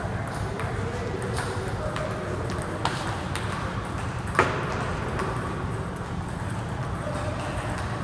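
Table tennis balls striking paddles and the table: an irregular series of sharp ticks, with one louder crack about four and a half seconds in, over a steady low background noise.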